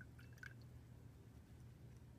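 Near silence: faint room tone, with a few faint small clicks in the first half second.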